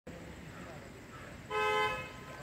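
A horn gives one short toot about one and a half seconds in, a steady held tone with several pitches together, over a low background murmur.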